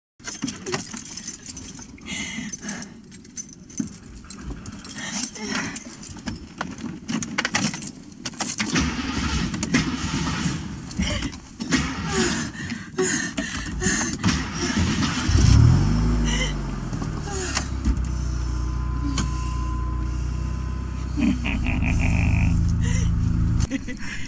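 Film soundtrack: scattered clicks and rattles inside a car, then a vehicle engine comes in with a sliding pitch about fifteen seconds in and idles as a steady low hum. The hum cuts off abruptly just before the end.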